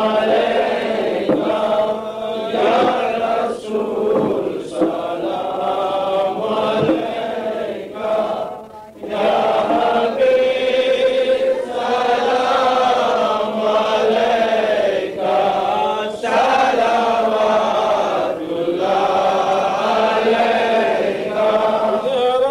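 Voices chanting a melodic Islamic devotional recitation in long held phrases, with a short pause about nine seconds in.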